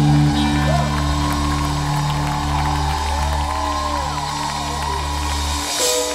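Live gospel worship band holding a sustained chord on bass and keyboard, with audience voices rising and falling above it. The low notes stop just before the end.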